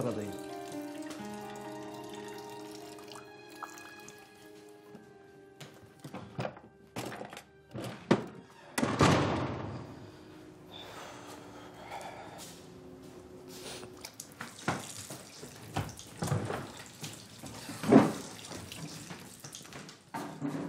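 Soft held music notes fading away over the first few seconds, then scattered knocks and clunks with a rush of running water about nine seconds in; the loudest clunk comes near the end.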